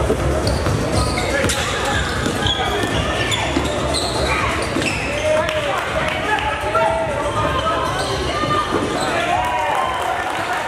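Basketball being dribbled and bounced on a gym floor during live play, with short squeaks of sneakers on the court and players' and spectators' voices echoing in the hall.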